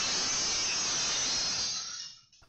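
A steady, even hiss of noise lasting about two seconds and fading out near the end, with no distinct crash or clinks standing out.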